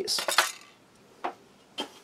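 Two light metallic clicks about half a second apart, as a small open metal tin is set down on a stainless steel food tray.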